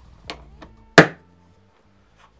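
Telescoping handle of a rolling tool box being pushed down into its housing: two light clicks, then one sharp loud clack about a second in as it drops home.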